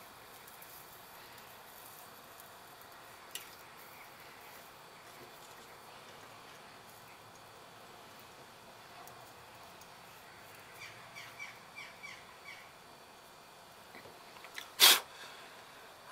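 Faint background hiss while a joint is soldered, with a bird calling a quick run of about six short, falling chirps a little after the middle. One loud sharp knock comes near the end.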